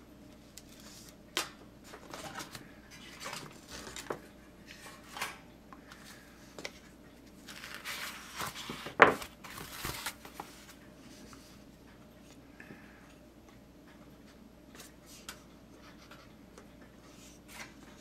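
Thin photo-etched metal sheets and their paper interleaf sheets being handled in a cardboard box: scattered light clicks and taps, with a longer rustle of paper about eight to ten seconds in and a sharp click in the middle of it.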